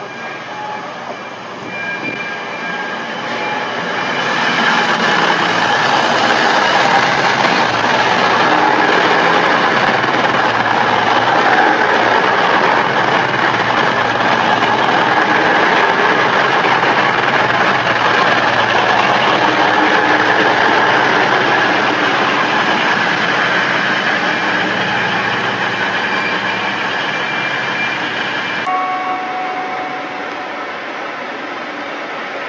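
Virgin Trains Class 221 Super Voyager diesel multiple unit passing close by: its underfloor engines and wheels on the rails grow loud over the first few seconds, stay loud as the coaches go past, then ease off. The sound cuts off suddenly near the end.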